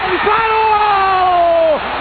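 A sports commentator's long drawn-out shout, held for about a second and a half and slowly falling in pitch, over stadium crowd noise, as a shot goes in on the goal.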